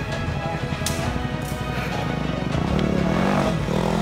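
Dirt bike engines revving on a muddy hill climb, their pitch rising and falling in the second half, over background music.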